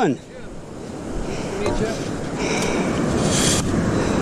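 Ocean surf breaking and washing up the beach, a steady rushing that swells in several surges, with wind buffeting the microphone.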